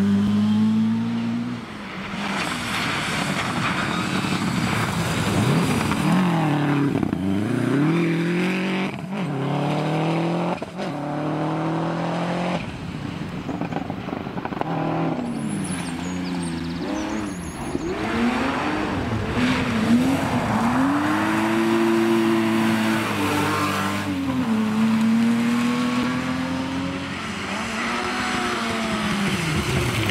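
Historic rally cars on a gravel stage, their engines revving hard. The pitch climbs and drops over and over as they shift gears and lift for corners, over a constant noisy hiss.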